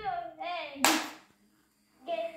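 A child's short, high-pitched vocal sounds, then a single sharp smack about a second in.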